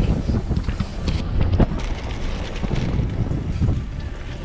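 Wind buffeting the microphone at an open car window, over the low rumble of the car.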